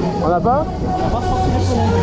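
Fairground ride noise: a voice on the public address, with a rising vocal call about half a second in, over a steady low rumble and music.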